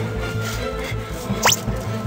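Background music with a steady low bass line, and about one and a half seconds in a single short sound that sweeps quickly up in pitch, like a drip.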